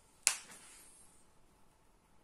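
A single sharp click about a quarter second in, fading quickly, over faint room tone.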